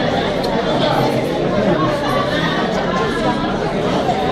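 Crowd chatter: many people talking at once in a room, overlapping conversations with no single voice standing out.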